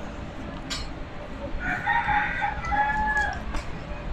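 A rooster crowing once in the background, beginning about a second and a half in and lasting nearly two seconds, ending on a held note that drops away. A single sharp click comes just before it.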